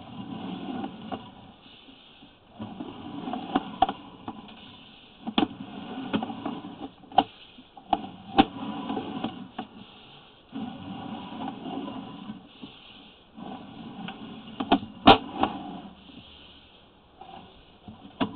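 Sewer inspection camera's push cable being hand-fed through the pipe, scraping and rattling in spurts of a few seconds with scattered sharp knocks.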